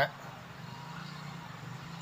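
Faint, steady low hum with a light background hiss, the room's background noise.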